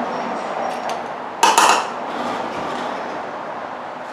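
Metal parts of a corroded battery hold-down clamp clinking as it is taken apart, with one loud short clatter about a second and a half in as its long bolt is set down on a metal tool cart, over a steady shop background hum.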